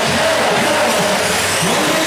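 Several 1/8-scale nitro RC buggy engines running together, their high buzz rising and falling as the cars accelerate and lift off around the track.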